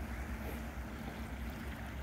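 Small waves washing gently onto a flat sandy beach, over a steady low rumble.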